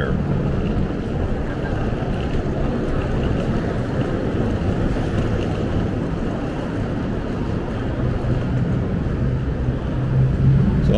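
Steady low rumble and hiss of vehicle traffic and idling engines under a covered concrete roadway, with a low hum underneath.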